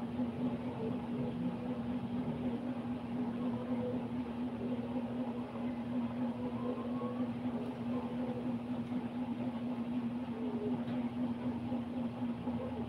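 A steady low hum, one constant tone, over an even background noise.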